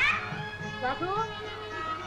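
A woman's high voice in sharp rising glides, at the start and again about a second in, over old film-soundtrack music with a steady held note underneath.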